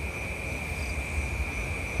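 Crickets chirping in a steady, high, unbroken drone over a low background rumble.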